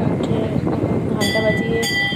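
A metal temple bell rung in worship: struck about a second in and again near the end, each stroke leaving a clear ringing tone, over the chatter of devotees.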